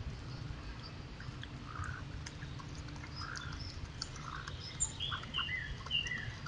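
Small birds chirping in short scattered calls, coming quicker and louder in the last second, over a steady low rumble.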